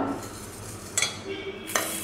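Small stainless steel bowls being handled and set down: a light clink about a second in and a sharper metallic knock near the end.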